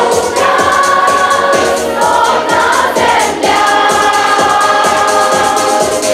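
Background music with a choir singing long held notes.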